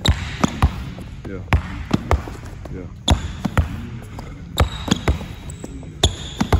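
A basketball dribbled hard on a plastic-tile sport court floor, about a dozen sharp bounces in an uneven rhythm, some coming in quick pairs.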